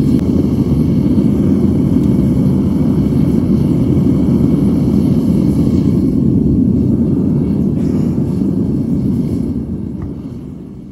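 Gas burner of a scrap-copper melting furnace running steadily at full heat, a loud, deep, even rushing noise. It begins to fade near the end.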